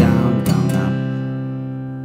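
Steel-string acoustic guitar strumming a C major chord in standard tuning: one firm down-strum at the start, left ringing and slowly fading, with a couple of light strokes about half a second in.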